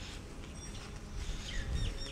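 A few faint, short bird chirps over a low, steady outdoor rumble.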